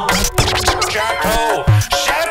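Hip hop beat with turntable scratching: a repeating bass-and-drum loop under short sliding scratch sweeps.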